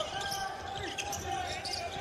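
Basketball being dribbled on a hardwood arena court, with faint voices in the hall.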